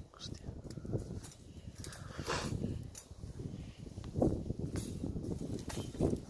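Rustling and light clicks from a wire-mesh rabbit cage trap being handled over dry grass, with a steady low rumble of wind on the microphone.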